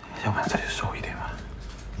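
Quiet speech: a voice talking softly, with short broken phrases.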